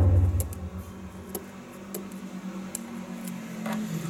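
Handling noise from hands working among a scooter's wiring and plastic parts: a heavy low thump right at the start, then a scattering of light clicks and taps over a steady low hum.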